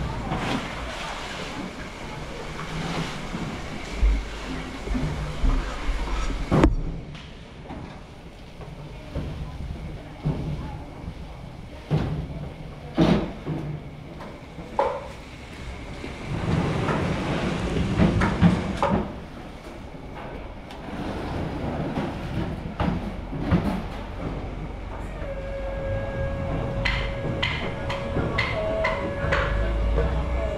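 Busy fish-port working noise: scattered knocks and clatters of plastic tubs and crates being handled on a wet concrete floor, over a noisy background with indistinct voices. Near the end a steady tone joins in.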